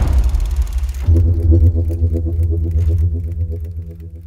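A film projector running: a quick, even mechanical clatter over a low hum, starting about a second in as a rumble dies away, and fading out near the end.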